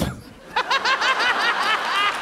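Hearty laughter in quick, repeated ha-ha pulses, starting about half a second in and running on strongly.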